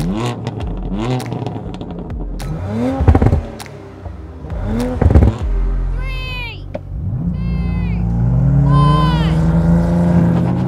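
BMW M3 CS's 3.0-litre twin-turbo straight-six blipped hard several times on the start line, each rev ending in sharp exhaust cracks. From about seven seconds in it is held at steady raised revs for the launch, with a few short high whines over it.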